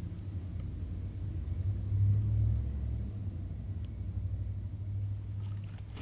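A low rumble that swells to its loudest about two seconds in, then slowly fades away.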